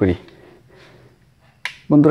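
A single sharp click about a second and a half in: a switchboard rocker switch being flipped on.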